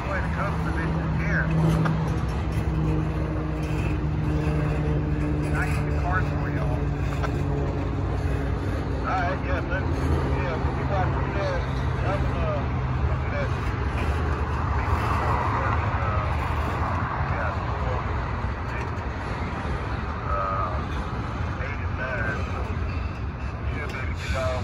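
Doublestack intermodal freight cars rolling past on the rails, a steady rumble of wheels and trucks. A low hum runs under it that slowly drops in pitch and fades out about halfway through.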